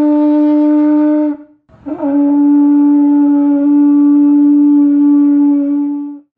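A conch shell trumpet blown in two long, steady notes at the same pitch: the first breaks off about a second in, and after a short gap the second comes in with a slight scoop up in pitch and is held to the end.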